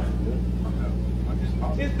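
A steady low hum with faint, broken voice sounds over it, in a pause between a man's a cappella sung phrases; his singing starts again right at the end.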